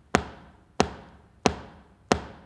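Hard-soled leather shoe tapping on a wooden stage floor in a steady beat, three taps about two-thirds of a second apart, each ringing out briefly in the hall: the sound of a listener's foot beating time to music.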